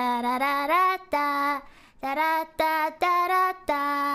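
A woman singing alone, unaccompanied: a short tune of held notes, each broken off cleanly before the next.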